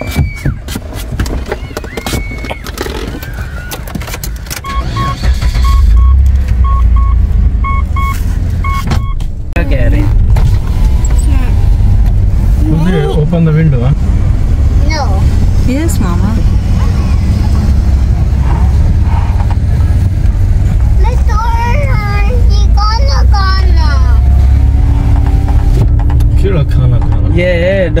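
Car cabin while driving: steady low engine and road rumble that swells a few seconds in. An electronic warning chime in the car beeps about twice a second for several seconds, with occasional voices over it.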